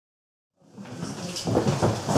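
Dead silence, then about two-thirds of a second in the sound of a lecture room fades in: room noise with a few knocks and rustles, growing louder toward the end.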